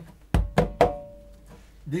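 Conga drums struck by hand three times in quick succession, each stroke ringing briefly with a clear tone.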